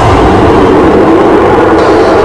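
Loud, steady, dense rumbling noise from a film trailer's sound design, with no speech or clear beat.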